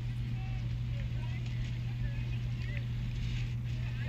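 A steady low hum throughout, with faint distant voices.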